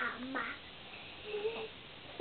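A young girl's voice: two short, loud open-mouthed shouts in the first half second, then a brief faint sung note about a second and a half in.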